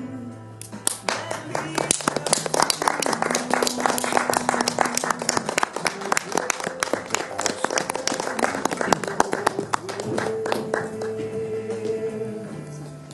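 Audience applauding, starting about a second in, over music with long held notes.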